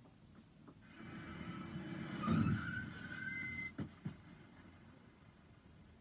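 Film sound effect of a car rushing in and braking with a rising tyre screech, swelling for a couple of seconds, then cutting off with two sharp knocks of the impact. It is faint, heard as the short film plays under the reaction.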